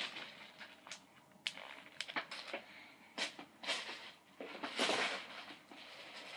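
Packs of soft-plastic fishing worms being handled: scattered light clicks and short plastic rustles, the longest rustle about five seconds in.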